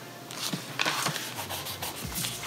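Paper rustling and rubbing as an open planner is handled and laid down on a desk, starting about half a second in as a run of scrapes and small knocks.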